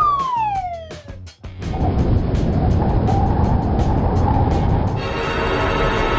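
Cartoon falling-whistle sound effect: a single whistle sliding down in pitch for about a second. It is followed by a loud, steady rushing noise like wind from a fall.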